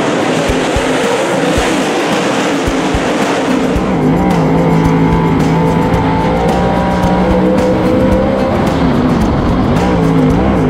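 Dirt late model race cars' V8 engines running as a pack on the dirt track, a dense rushing wash. About four seconds in, the sound changes to one car's engine heard from inside the cockpit, holding a steady pitch.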